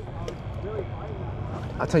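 Steady outdoor background noise with faint voices of other people. A man starts talking near the end.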